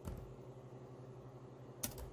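Two faint computer keyboard keystrokes, one at the start and one near the end, over a steady low hum.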